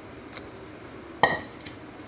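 Kitchenware clinking: one loud, sharp clink with a short ring a little over a second in, and a couple of faint taps around it, as a frying pan is emptied over a glass baking dish and set down.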